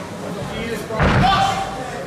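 A single heavy thud in the ring about a second in, with a low boom, followed at once by shouted voices.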